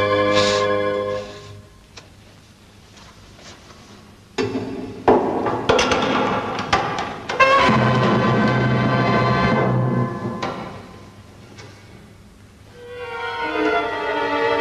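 Dramatic orchestral underscore. A held chord fades out, then after a quiet stretch a sudden loud passage with sharp drum and brass hits breaks in about four seconds in and dies away by about ten seconds. A sustained chord swells in again near the end.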